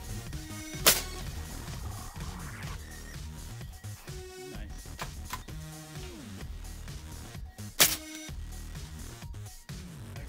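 Two shots from a big-bore air rifle, each a single sharp crack, one about a second in and one near the end, over background electronic music.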